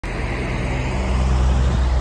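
Semi-truck's diesel engine idling, a steady low hum.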